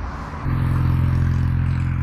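Steady low engine rumble of road traffic that sets in suddenly about half a second in.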